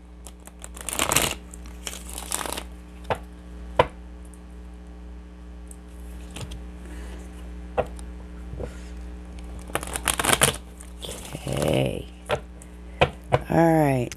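A deck of tarot cards being shuffled by hand: several short rustling bursts as the cards are riffled, with a few sharp clicks in between. A steady low hum runs underneath.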